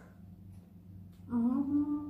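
A woman humming a closed-mouth "mmm" while chewing food, starting about a second and a half in, rising slightly in pitch and then holding steady.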